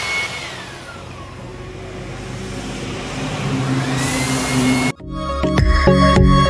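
Handheld electric air blower running: its motor whine winds down in the first second, runs low, then spins up again about four seconds in. Near the end it cuts off suddenly and electronic music with a steady beat takes over.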